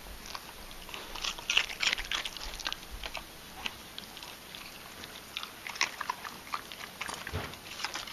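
A dog chewing and crunching carrot right at the microphone: a run of irregular crisp crunches, thickest about a second in and again in the last few seconds.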